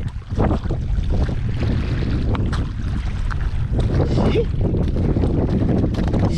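Wind buffeting the microphone in a steady low rumble, over waves washing onto the shore with a fast-rising tide.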